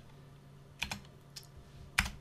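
Computer keyboard keys clicking a few separate times, the last and loudest near the end as the Enter key is struck to submit a command.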